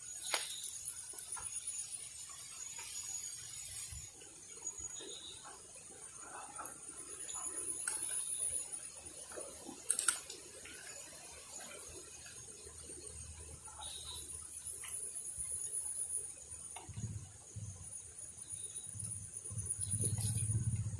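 Quiet outdoor ambience: insects giving a steady high-pitched buzz, with faint scattered clicks and rustles and a sharper click about halfway through.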